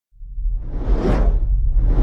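Cinematic whoosh sound effect over a deep low rumble, swelling to a peak about a second in and fading away, with a second whoosh building near the end.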